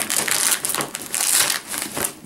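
A heavy fabric shoulder bag being handled, the cloth rustling and scraping irregularly as it is pulled open and shifted in the hands.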